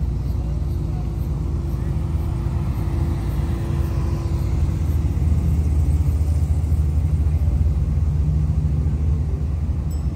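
Low, steady rumble of a vehicle's engine and tyres heard from inside the cabin while it rolls slowly, growing a little louder a few seconds in and easing off near the end.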